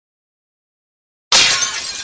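Glass-shattering sound effect for a logo reveal: silence, then a sudden loud crash just over a second in, with tinkling shards trailing off.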